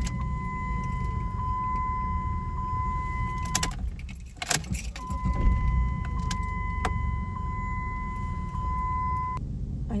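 A steady electronic warning tone from the 2002 Jeep Liberty's dashboard sounds in two long stretches of about four and a half seconds each, with a one-second break between them. Under it the engine idles, with a few sharp clicks and rattles.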